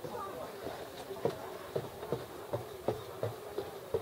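Footsteps of someone walking at an even pace, about three steps a second, beginning about a second in.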